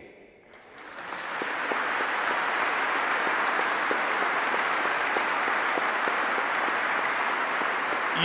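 Audience applauding, swelling within the first two seconds into steady, sustained clapping.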